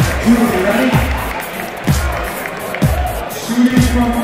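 Background music with a steady bass beat, over crowd chatter.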